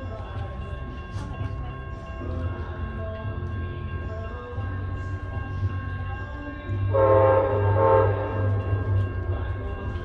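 Horn of an approaching Amtrak P42DC diesel locomotive, still out of sight, over a steady low rumble. The horn is loudest in two close blasts about seven and eight seconds in.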